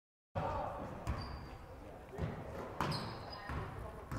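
Silent for a moment at the start, then a basketball game on a hardwood gym floor: several thuds of the ball bouncing, with short high sneaker squeaks and players' and spectators' voices.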